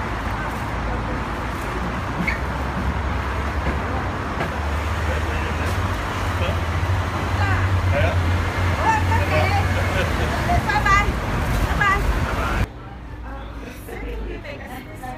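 Low rumble of street traffic that swells through the middle, under snatches of conversation; it cuts off suddenly near the end.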